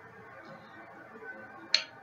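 Faint room noise with a single short, sharp click about three quarters of the way through.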